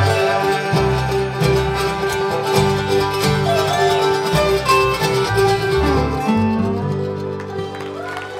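Bluegrass band of banjo, mandolin, acoustic guitar, upright bass and dobro playing the instrumental close of a song after the last vocal line, with a long held note over changing bass notes. The music eases off near the end.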